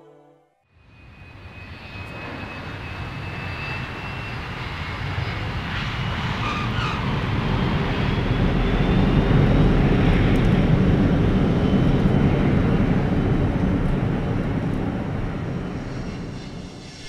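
Jet airliner's engines at takeoff power as it rolls down the runway and passes. The rumble builds over several seconds, peaks past the middle and fades near the end, with a faint whine that rises slowly in pitch.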